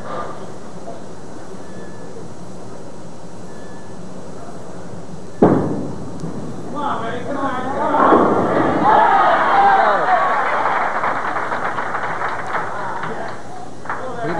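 A sharp thud about five seconds in as the bowling ball lands on the lane at release. About eight seconds in the pins crash, and a crowd of spectators breaks into cheering and shouting for the strike. A steady hiss of old videotape sits underneath.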